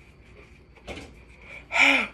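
A woman sighing, her mouth burning from very spicy noodles: a soft breathy exhale about a second in, then a short loud voiced sound near the end.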